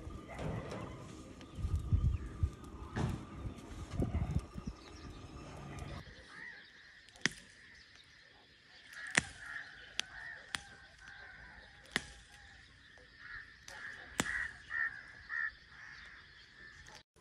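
Birds calling over and over, with short calls coming in clusters through the second half and a few sharp clicks among them. For the first six seconds, loud low rumbling bumps lie over the sound.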